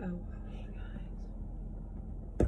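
A short "oh" and faint whispered talk over the steady low hum inside a car.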